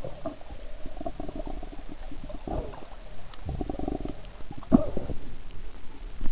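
Muffled, irregular gurgling and rumbling of water heard through a camera held underwater. It swells louder a little past the middle, with a brief sharp burst near the end.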